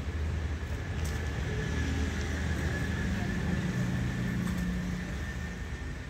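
A low, steady engine hum from a motor vehicle, growing a little stronger in the middle.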